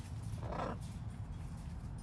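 A macaw gives one short, low, rough grumble about half a second in.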